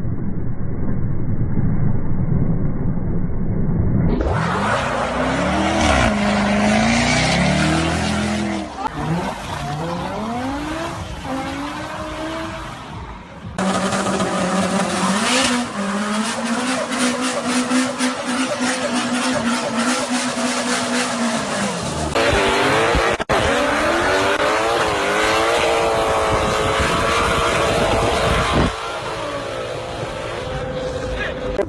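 Performance car engines revving hard during burnouts, the revs climbing and dropping again and again, with tyre squeal from spinning wheels. The sound changes abruptly several times as one clip cuts to the next, and one engine holds a steady high rev for several seconds in the middle.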